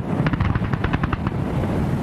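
Fireworks going off: a rapid, dense run of bangs and crackles that starts suddenly and keeps going.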